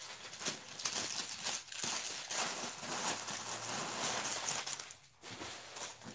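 Plastic wrapping and paper stuffing crinkling and rustling as a new handbag is handled and unwrapped, with a brief lull about five seconds in.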